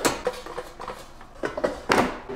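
Air fryer basket being handled: a sharp knock right at the start and another near the end, with quiet clatter between.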